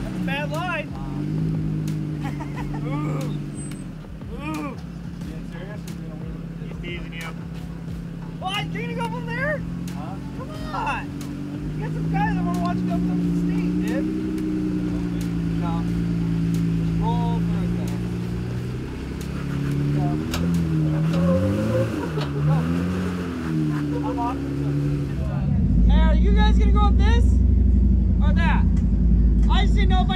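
Jeep Wrangler engine revving up and down unevenly as it crawls over sandstone ledges, with voices calling in the background. Near the end a loud low rumble of wind on the microphone takes over.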